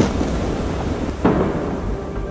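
Deep, rumbling explosion boom, with a second impact about a second and a quarter in.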